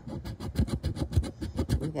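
A large metal coin scraping the coating off a paper scratch-off lottery ticket in rapid back-and-forth strokes.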